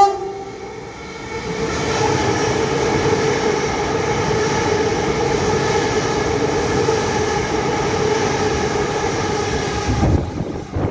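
Melbourne Metro Siemens Nexas electric suburban train running past along the platform: a steady, loud rumble and rattle of wheels on rail with a steady whine over it, building up about a second and a half in. The last moment of its horn blast cuts off right at the start.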